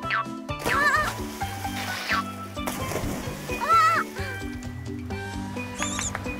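Bouncy cartoon background music with a steady bass line, over which a cartoon character gives warbling squeals about a second in and again near four seconds, with a couple of quick rising whistle slides. A splash of water comes about halfway through.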